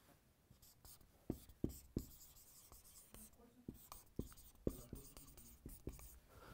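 Marker pen drawing and writing on a whiteboard: faint, irregular taps and short strokes of the tip on the board.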